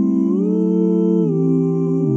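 Layered a cappella voices holding sustained chords with no clear words. The chord glides upward about a third of a second in, then steps down just past a second, with the low part dropping lower.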